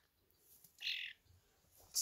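A young European starling giving one short, harsh call about a second in.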